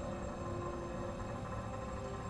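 A steady low drone with several held tones and a rumble underneath, from the TV episode's soundtrack: ambient score or room hum.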